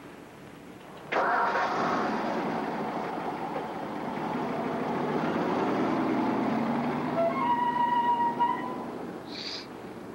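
A car engine starting suddenly about a second in and running as the car pulls away, easing off over the following seconds. Background music with steady pitched notes comes in near the end.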